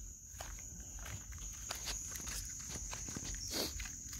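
Footsteps on a woodland trail, irregular scuffs and crunches, over the steady high chirring of crickets.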